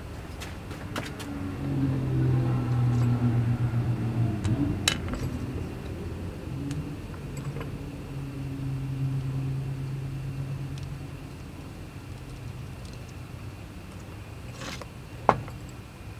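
Light metallic clicks and taps of small steel parts being handled and fitted together on a wooden bench, with one sharp click near the end. Under them, a low steady droning hum swells twice and fades.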